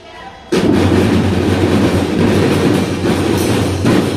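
A children's drum band plays dense, steady percussion with melodic instruments. After a brief lull, the whole band comes in loudly about half a second in and keeps playing.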